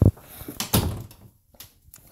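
A sharp thump right at the start, then a second, duller knock with a short rustling tail a little under a second later, and a faint tap near the end.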